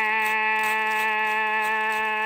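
A single voice holding one long, steady sung note in a Dao-language folk love song (hát Dao duyên).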